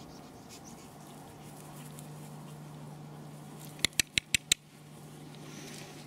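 Five quick, sharp clicks in a row about four seconds in, over a faint steady low hum.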